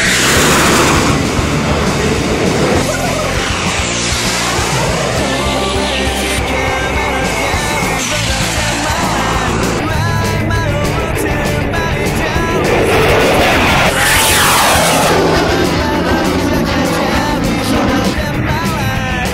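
Loud rock music track with the noise of fighter jets passing overhead mixed in. Jet sweeps fall in pitch as they go by near the start, around four seconds in, and again around fourteen seconds in.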